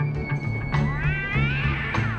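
Background music with a steady low beat. About a second in, a cat gives one drawn-out meow that rises and then falls in pitch.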